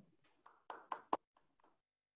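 A few faint clicks and taps in quick succession, about six in just over a second, picked up by a video-call microphone at a desk.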